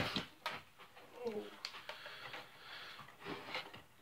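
Hard plastic toy lightsaber blades and hilt pieces being handled and pulled apart, giving several sharp clicks and knocks spread over a few seconds with soft rubbing between them.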